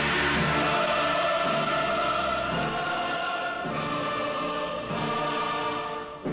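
Soundtrack music: a choir singing loud held chords over orchestral backing.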